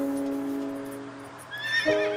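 A horse whinnies once, high and wavering, about one and a half seconds in, over commercial soundtrack music that holds a sustained chord and moves to a new chord near the end.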